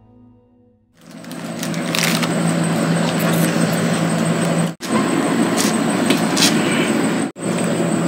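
A music tail fades out, and after about a second of silence comes steady outdoor background noise with a low steady hum, broken by two brief dropouts.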